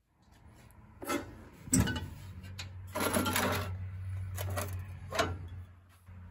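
Knocks and light metallic clatter, with a steady low hum that comes on with a sharp knock about two seconds in and stops near the end.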